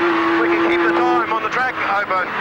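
Nissan Skyline GT-R R32's twin-turbo straight-six heard from inside the cockpit holding a steady drone, the note falling away a little over a second in. A driver's voice over the in-car radio runs over it.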